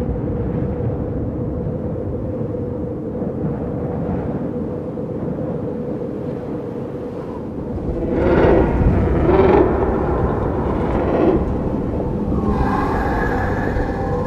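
A film soundtrack's low rumbling ambient drone with a faint steady hum, swelling with three louder surges about eight to eleven seconds in, and higher drawn-out tones coming in near the end.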